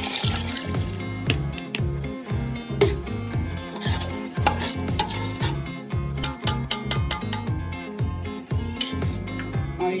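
A metal spoon stirring dal and water in a steel pot, with sharp clinks and scrapes against the pot and a brief sizzle near the start as the water meets the hot masala. Background music with a steady bass beat runs underneath.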